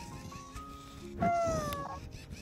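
Moflin AI pet robot giving one short, meow-like squeak that falls in pitch, about a second in, over background music with a few rising notes.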